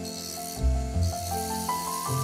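A jeweler's rotary handpiece bit grinding a small workpiece, a steady high hiss that dips briefly about half a second in, under background music.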